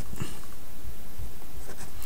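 Felt-tip marker writing on paper in short strokes, over a steady low background hum.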